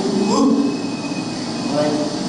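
A man making wordless vocal noises, played back from a video through loudspeakers over a steady low hum: a short rising sound about half a second in and another short one near the end. The noises stand for how an artist 'feels' a face while drawing it.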